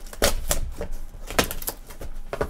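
Trading card boxes, wrapping and cards being handled on a table: irregular sharp clicks and crinkles, several each second, the loudest about a second and a half in.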